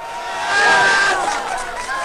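A room full of people cheering and yelling in celebration, many voices overlapping, with one long high yell about half a second in.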